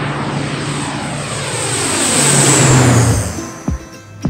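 Twin-engine turboprop airliner taking off and passing low overhead: engine and propeller noise with a high whine grows louder, peaks between two and three seconds in, then drops in pitch and fades as the plane goes by.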